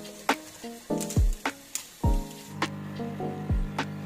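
Lofi background music: a slow beat of deep kick drums and crisp clicks under soft held chords, with a steady low tone swelling in about halfway through.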